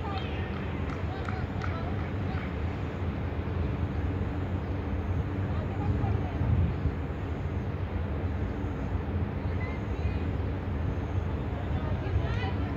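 Outdoor ambience at a cricket ground: a steady low rumble with faint, distant voices calling now and then, most of them near the start.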